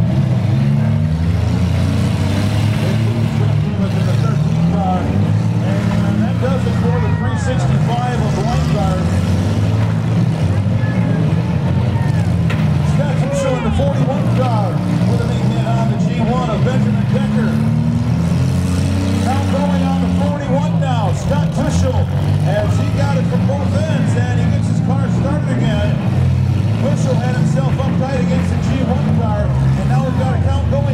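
Several demolition derby compact cars' engines revving hard and rising and falling in pitch as the cars ram each other, with a few sharp crunches of impacts. Voices shout over the engines throughout.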